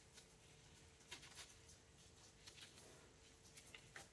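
Near silence, with a few faint, brief rustles of climbing rope being handled as it is tied into a triple overhand stopper knot.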